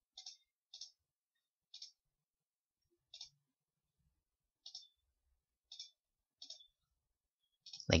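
Computer mouse clicking about eight times at irregular intervals, with silence between the clicks. A man's voice starts a word at the very end.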